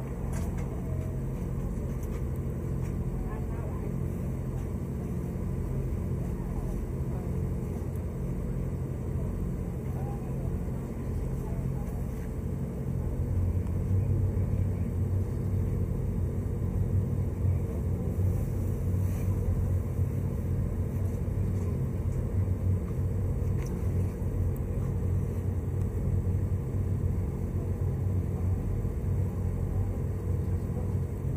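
A steady low mechanical drone from running machinery, growing louder about halfway through.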